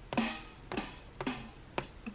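Four drum hits played by tapping the pads of a drum-kit app on an iPad, about half a second apart, each with a short ringing tail, heard through the tablet's speaker.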